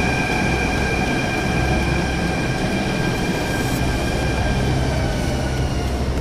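Delhi Metro train at the platform, a steady rumble of running noise with a high, even electrical whine that fades about five seconds in.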